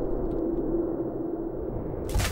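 A low sustained tone over a rumble, dying away near the end, like a dramatic underscore drone following a catapult shot.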